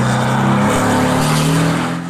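Time-attack race car's engine running hard as the car accelerates away across the track, its note rising a little partway through.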